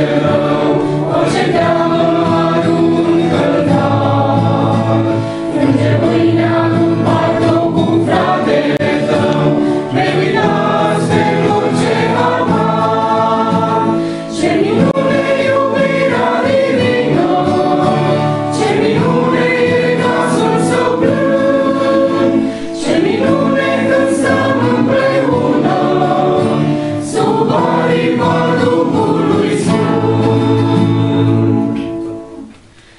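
Church choir of men and women singing a hymn in Romanian, with short breaks between phrases.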